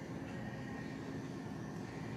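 A steady low mechanical hum, with a faint high tone riding over it.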